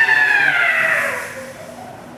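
A high wailing tone that swoops up, then slides steadily down in pitch over about a second and a half and fades away.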